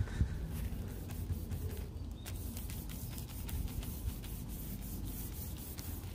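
A hand in a plastic Ziploc bag rubbing over a truck's painted hood, giving a steady, faint, scratchy rasp with small ticks. The rasp comes from bonded iron and other contaminants on the paint, which feels bumpy.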